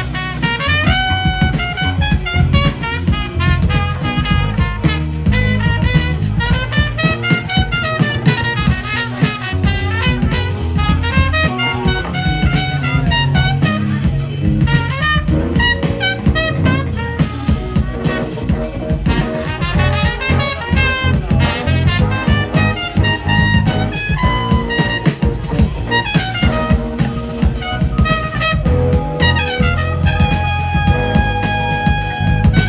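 Live band music: a trumpet playing a solo line over a steady beat and bass.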